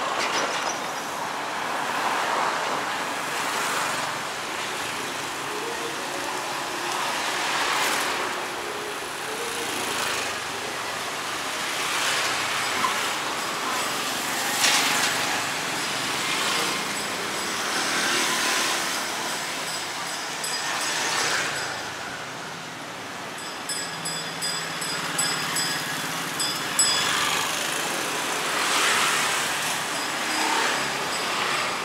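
Street traffic heard from the roadside: motor scooters and cars passing close by one after another, each swelling and fading over a steady traffic hum.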